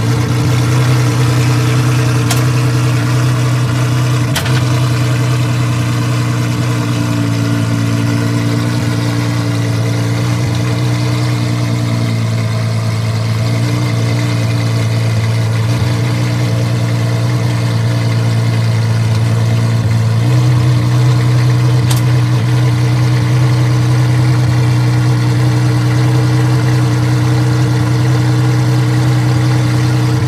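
Apollo Intensa Emozione's V12 engine idling steadily at close range, its tone stepping up slightly about two-thirds of the way through.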